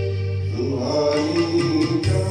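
A man singing a slow Hindi film song into a microphone over an instrumental backing track, holding and bending one long note.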